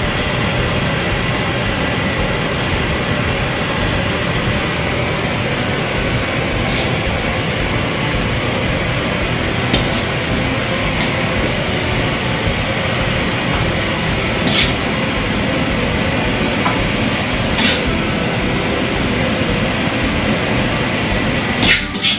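Steady roar of a commercial wok range's gas burner and kitchen extraction, with a handful of sharp metal clinks from a ladle striking the wok, the loudest just before the end as the wok is tossed.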